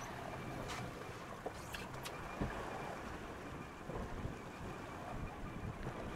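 Steady wind and sea noise around an open boat at sea, with a few faint clicks in the first half.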